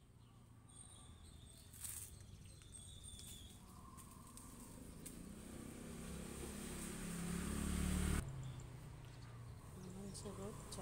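Faint outdoor ambience with a few short bird chirps, under a low rumble that grows steadily louder and cuts off suddenly about eight seconds in.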